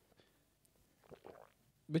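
A pause of near silence with a few faint short sounds about a second in, a man sipping and swallowing from a mug. Loud male speech begins at the very end.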